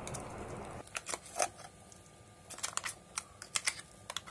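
Steel spoon clicking and scraping against a steel bowl and the rim of a clay pot as ground masala paste is scooped out: light, irregular clicks, a few scattered ones and then a quick run of them about two and a half seconds in.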